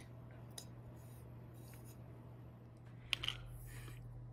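Quiet room tone with a steady low hum, broken by a few faint taps and clicks, the sharpest just after three seconds in, followed by light handling scuffs.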